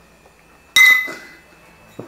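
Two glass Miller High Life beer bottles clinked together once, a sharp glassy ring that fades within about half a second. It is the knock meant to set the ice-cold, supercooled beer freezing into slush.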